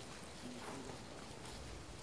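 Quiet outdoor background with a few faint, irregular light taps.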